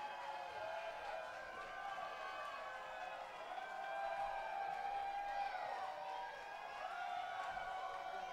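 Faint concert crowd, many voices singing and calling out together in long, overlapping rising and falling notes, with no band heard under them.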